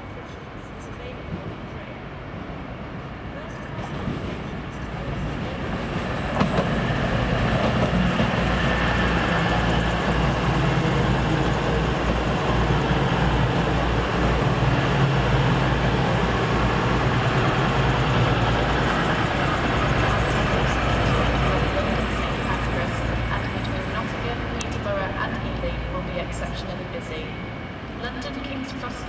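Diesel train running past, its engine and wheels building up over several seconds, loud for about fifteen seconds, then fading away.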